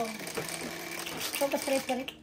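Electronic automatic mahjong table's motor running with a steady hum as it raises the shuffled, pre-stacked tile walls up onto the tabletop.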